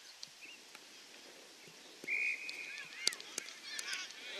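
Open-air ambience of a junior football oval: a short, steady, high whistle about two seconds in, then two sharp knocks a little after, with faint scattered distant calls around them.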